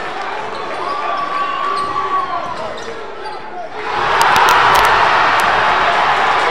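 Basketball game sound in a gym: the ball dribbling on the hardwood, sneaker squeaks and spectators' voices. About four seconds in, the crowd noise rises sharply and stays loud.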